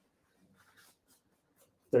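Near silence with faint rustling of fabric and paper being handled by hand, then a voice starts right at the end.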